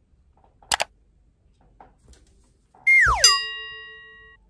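Subscribe-button animation sound effects: a quick double mouse click, then a pitched swoop sliding steeply down and a bell ding that rings out and fades.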